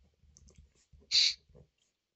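Light clicks and taps of a stylus writing on a tablet screen, with one short loud hiss a little over a second in.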